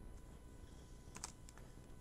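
Near silence with a few faint, short clicks a little over a second in, from drafting dividers and a pen being handled on a paper plotting sheet.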